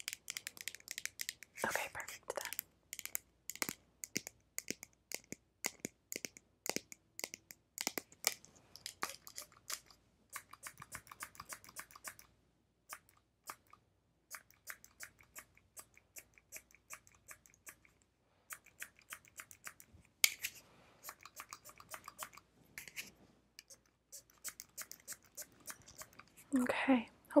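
Plastic trigger spray bottle spritzing close to the microphone: many short, crisp sprays, some in quick runs, with a few brief pauses.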